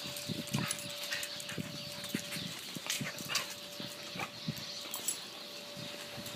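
A corgi close by, making short, irregular sounds mixed with small clicks.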